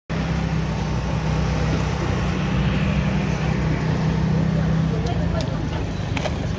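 Market stall ambience: a steady low machine hum under an even background noise, with indistinct voices and a few sharp clicks near the end.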